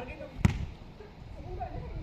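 A basketball striking once with a sharp knock about half a second in, as it is shot at the hoop, with faint voices murmuring in the background.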